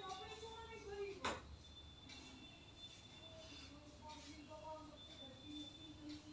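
Faint, indistinct voices in the background, with one sharp tap about a second in.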